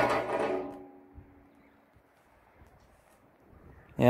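A man's drawn-out, held vocal sound, like a hum, fading out within the first second, then near silence with one faint tick.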